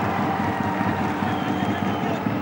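Steady open-air ground ambience of a cricket stadium picked up by the broadcast's field microphones: an even rushing noise with no distinct events.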